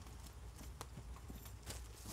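A few faint, sharp knocks and clicks over a low steady rumble, two of them close together near the end.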